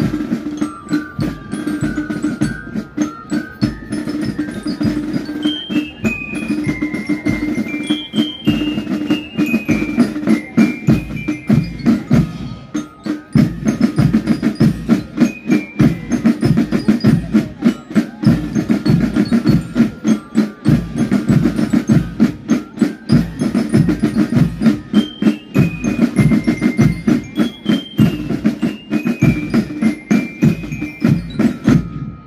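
Marching band of drums and bell lyres playing: a melody of struck bell notes over rapid snare and bass drum strokes. The bell melody drops out for about ten seconds midway while the drums carry on louder, then comes back near the end.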